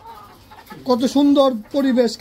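Caged chickens clucking: a quick run of short pitched calls that sets in about three-quarters of a second in.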